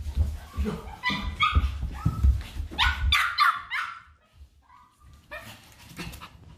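A small dog barking and yipping in a quick run of short, high calls over the first four seconds, with low thuds beneath, then one more bark near the end.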